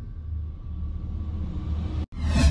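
Deep, steady low rumble from the sound design of a broadcast intro sting, with little but bass in it.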